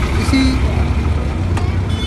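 Steady low rumble of a vehicle engine idling close by.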